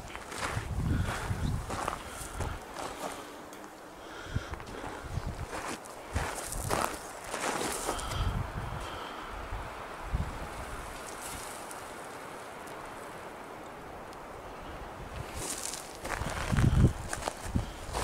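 Footsteps crunching over loose gravel and rock chips, uneven and irregular, easing off for a few seconds past the middle before picking up again near the end.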